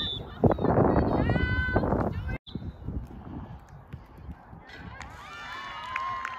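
Spectators cheering and shouting, with high shrill yells over a loud burst of crowd noise that lasts about a second and a half. The sound cuts off abruptly a little over two seconds in, and more shouting rises near the end.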